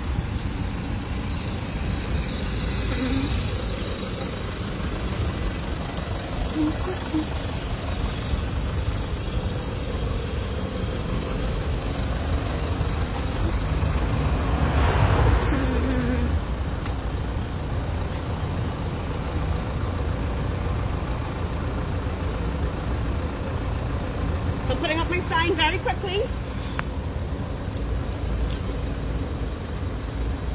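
Steady street traffic noise with a low rumble, swelling as a vehicle passes about halfway through. A brief wavering pitched sound comes near the end.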